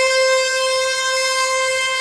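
A sampled synth tone played back an octave above its root pitch in the TAL-Sampler software sampler, with time stretching on and the linear resampling mode: one steady, bright held note.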